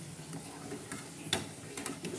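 A metal spoon stirring in a steel saucepan on a gas stove, clicking against the pan a few times, loudest about a second and a half in, over a low steady hum.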